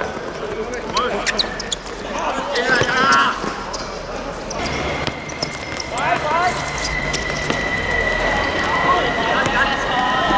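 A football being kicked and bouncing on a hard court surface, sharp thuds at irregular intervals, amid players' shouts.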